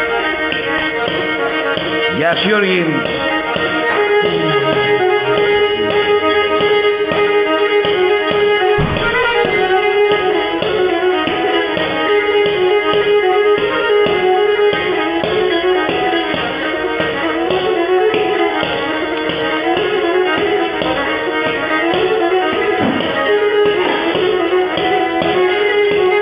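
Pontic lyra (kemençe) being bowed, playing a lively traditional tune over a steady drone, with a regular rhythmic pulse from the bow strokes.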